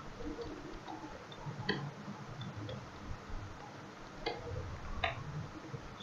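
Faint, irregular computer keyboard clicks from typing, with a few sharper keystrokes standing out.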